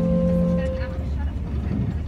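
Acoustic guitar background music: a held chord rings on and dies away within the first second, leaving a steady low rumble and a faint voice.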